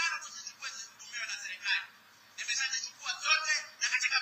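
A man's voice, amplified through a microphone, heard thin and tinny through a television speaker, with a short pause partway through.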